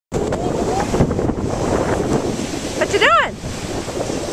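Surf breaking on a sandy beach, with wind buffeting the microphone. About three seconds in comes one short high call that rises and then falls.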